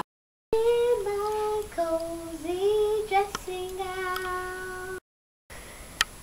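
A child singing a short wordless tune in steady held notes. It starts about half a second in and cuts off sharply about a second before the end.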